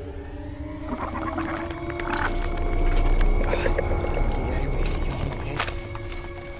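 Eerie horror-film soundtrack: several sustained drawn-out tones over a deep rumble that swells to its loudest about three seconds in, with a sharp crack near the end.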